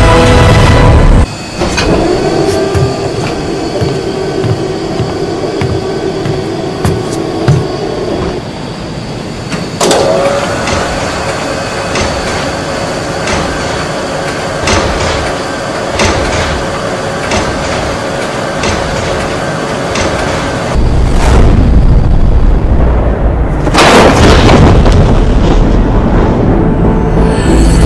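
Soundtrack music laid with mechanical sound effects. A heavy low rumble cuts off about a second in. Then a string of sharp metallic clicks and clanks runs over steady tones. The low rumble returns a few seconds before the end, with a brief rushing burst.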